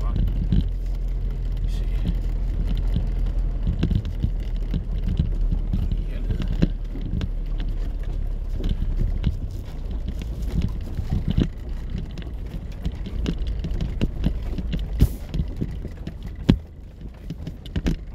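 A car driving slowly over a rough grass field, heard from inside the cabin: a steady low rumble from the engine and tyres, with frequent knocks and rattles as it jolts over the uneven ground.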